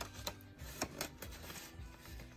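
Soft background music with a few light clicks and rustles of paper bills being slid into a plastic cash envelope in a ring binder.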